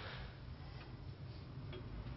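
A quiet pause with low background hiss and two faint ticks, about a second apart.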